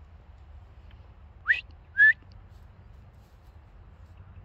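A person whistling two short upward-gliding notes, about half a second apart, calling a dog.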